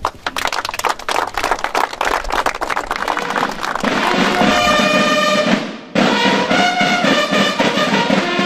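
Drum and brass band playing: rapid snare-drum strokes in a roll, then brass horns come in with held notes over the drums about four seconds in, breaking off briefly near six seconds before starting again.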